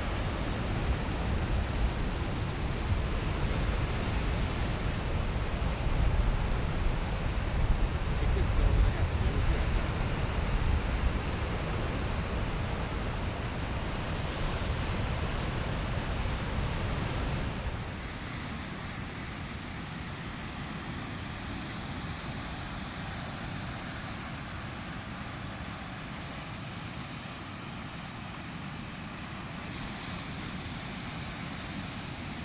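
Ocean surf breaking on a rocky shore, with wind buffeting the microphone in low, gusty rumbles for the first half. About two-thirds of the way through, the wind rumble drops away suddenly and the surf goes on as a steadier hiss.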